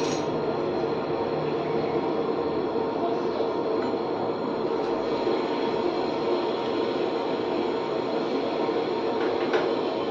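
Steady, even hum of an electric motor running, holding one pitch throughout.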